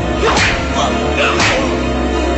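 Two sharp swishing fight sound effects, punch or swing whooshes, about a second apart, over dramatic background music.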